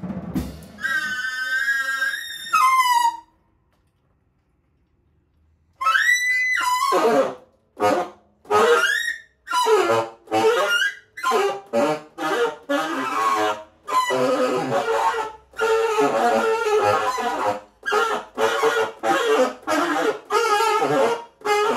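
Tenor saxophone improvising: a wavering held note that bends downward, then about two and a half seconds of silence, then a rising cry followed by a string of short, separated bursts.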